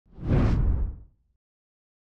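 A single whoosh sound effect with a deep rumble underneath, swelling quickly and fading out within about a second.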